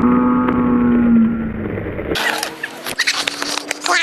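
Skateboard wheels rolling on asphalt, with a steady, slightly falling pitched tone over them for about two seconds. The sound then cuts off abruptly and gives way to scattered clicks and knocks.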